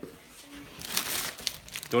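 A brief crinkling, rustling sound about a second in, as of something being handled.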